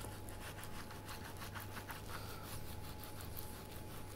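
Faint, irregular scraping of a long, flexible knife sawed back and forth between salmon skin and flesh as the fillet is skinned, over a steady low hum.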